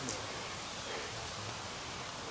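Steady hiss of woodland ambience with light rustling and a faint distant voice, with a small click just after the start.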